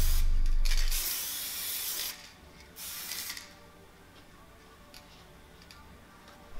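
Aerosol can of acrylic graffiti paint spraying in two bursts: a longer hiss of about a second and a half, then a short one about three seconds in.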